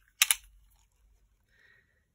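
Handling noise from a soft, flexible tape measure being pulled straight and laid across a ceramic tray: one short, sharp rustle about a quarter second in, then only faint brushing sounds.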